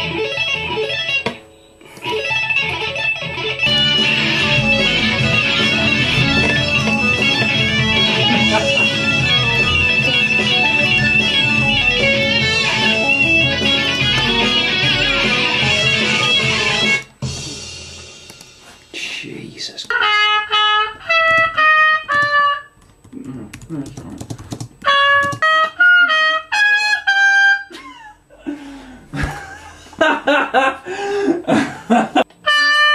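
Electric guitar over a dense backing arrangement playing a folk-style tune, which stops abruptly about 17 seconds in. After a short pause come short melodic phrases of single held notes stepping downward, separated by gaps.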